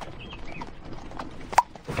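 Horse hooves clip-clopping as a carriage travels, from an animated film's soundtrack, with a single sharp click about three-quarters of the way through.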